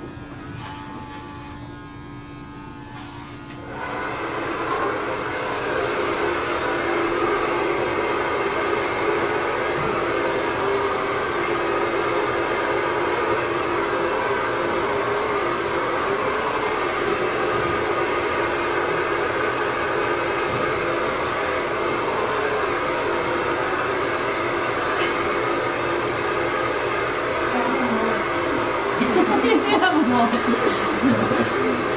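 Electric hair clippers with a guard attachment running with a steady buzz. About four seconds in, a much louder, steady whirring noise starts and stays.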